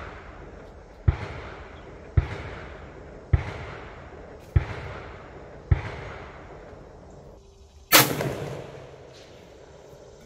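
A single loud 6.5 mm rifle shot about eight seconds in, its report followed by a long echo. Before it comes a string of six sharp gunshots about a second apart, each with its own short echo.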